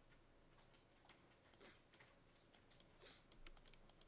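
Near silence: room tone with faint, irregular clicks from a computer mouse and keyboard in use, a few bunched together about three seconds in.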